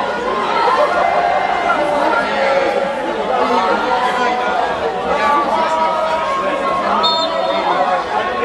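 Many voices talking at once in a steady babble, with no single speaker standing out.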